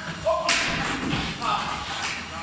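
A thud about half a second in, with further knocks of a youth hockey drill on a synthetic-ice floor: stick, puck and skates. A voice calls out.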